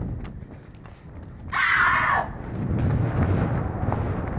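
Running footsteps and clothing rustle from a person moving fast on a paved street, with a short loud cry about one and a half seconds in. A low rumble follows in the second half.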